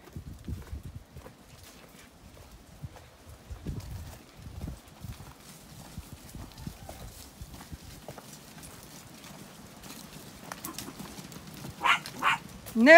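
Hooves of a small flock of sheep trotting along a dirt lane: a quick, irregular patter of many steps.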